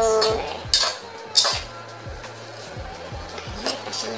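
Metal spoon stirring soaked bread cubes in a metal pot, with two sharp clinks against the pot in the first second and a half. Background music plays throughout.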